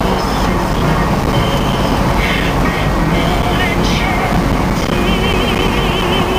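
Steady road and engine noise inside the cabin of a Suburban cruising at highway speed, a constant low rumble under tyre and wind hiss. Faint high wavering tones come and go above it, most clearly near the end.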